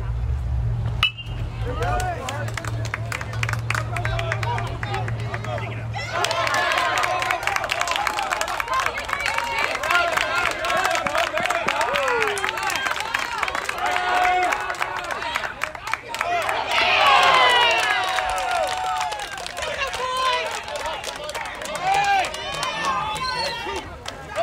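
Voices of baseball players and spectators calling out and chattering across the field, with a louder burst of higher-pitched shouting and cheering about 17 seconds in. A low steady hum runs under the first six seconds.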